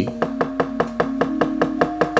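A wayang kulit puppeteer's wooden cempala knocking rapidly and evenly on the puppet chest, about eight knocks a second. Under the knocks a held musical note sounds, stepping up in pitch a little after halfway.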